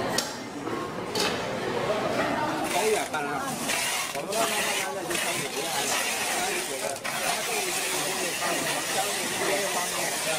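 Background voices chattering throughout. From about three seconds in, packing tape is pulled off a hand-held tape dispenser in long strips around a cardboard box, with short breaks between pulls.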